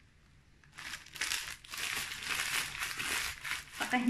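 Brown paper bag crinkling and rustling as it is handled and folded, starting about a second in and stopping just before the end.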